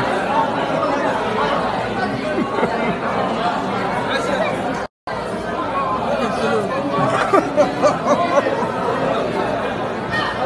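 Many people chattering and talking over one another, a steady babble of voices at a crowded gathering. The sound cuts out completely for a moment about halfway through.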